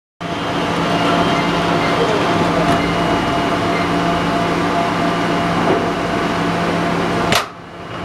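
Automated ultrasonic cleaning line running: a steady machine hum with several held tones over the rush of water circulating through the stainless-steel tank. A sharp click comes just before the end, after which the sound drops away.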